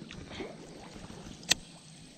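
Water sloshing softly around someone wading through a lily-pad pond, with one sharp click about a second and a half in.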